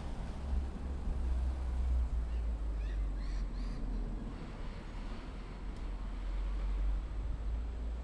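Outdoor canal-side ambience dominated by a low, uneven rumble of wind on the microphone. A few faint, brief bird chirps come about three seconds in.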